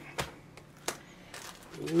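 Hands handling the scanner's zippered fabric carrying case and the plastic bags of cables: faint rustling with two sharp taps, the second about three-quarters of a second after the first.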